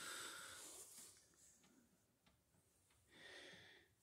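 Near silence with two faint breaths from the person holding the phone, one at the start and one near the end, and a few faint ticks between.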